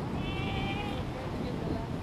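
Galapagos sea lion pup calling for its mother: one high-pitched call lasting just under a second, near the start, over wind and surf.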